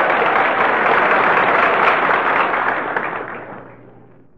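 Studio audience laughing and applauding at a joke, the noise dying away over the last second or so.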